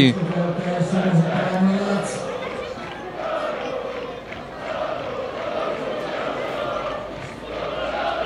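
Football crowd chanting together in the stands, a dense mass of voices that rises and falls in waves.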